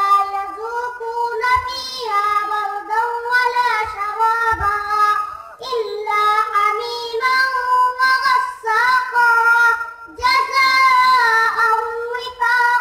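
A young boy reciting the Quran in the melodic tilawat style, his high voice holding long, ornamented phrases with brief pauses for breath.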